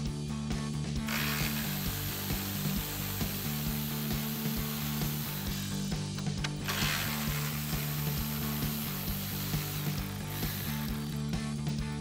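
Cordless electric ratchet with a 10 mm socket running as it backs bolts out of the radiator support. There are two long runs, the first from about a second in to about six seconds, the second until about ten seconds.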